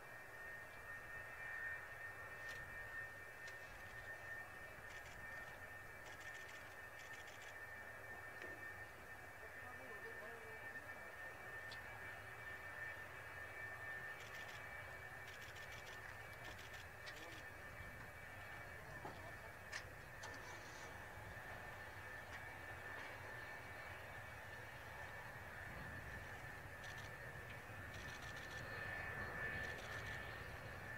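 A distant F-4EJ Kai Phantom II's twin J79 turbojets at low power as the jet rolls out on the runway after landing: a faint, steady high whine. A few short higher calls stand out at times over it.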